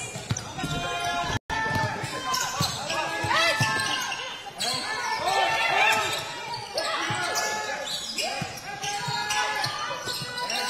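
Basketball court sound in an arena hall: a ball being dribbled on the hardwood floor, sneakers squeaking as players move, and players calling out. The audio cuts out briefly about one and a half seconds in.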